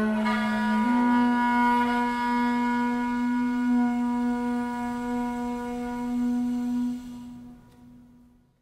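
Duduk holding one long low note that steps up slightly about a second in, with a kamancheh bowing sustained notes alongside; the music dies away near the end as the improvisation closes.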